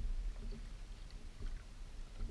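Kayak paddle strokes: the blade dips into and pulls through calm water with faint splashes and drips, about half a second in and again near the end. A steady low rumble runs underneath.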